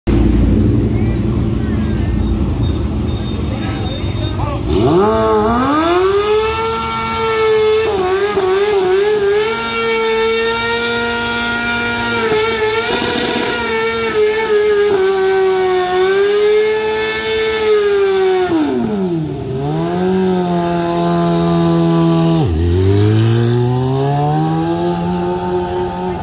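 Sport bike doing a burnout: after a low engine rumble, its engine is revved up about five seconds in and held at high revs with small wavers for over ten seconds, the rear tyre spinning on the pavement. The revs drop twice and the pitch then climbs steadily as it accelerates away.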